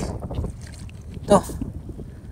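Low, steady rumble of shallow seawater stirred by a hand groping in seagrass and sand for a crab, with wind on the microphone.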